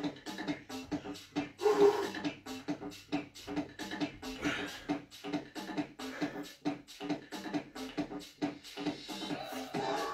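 Background music with a fast steady beat.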